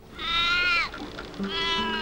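Two drawn-out farm-animal calls, the second shorter, each dropping in pitch at its end, over faint steady background music.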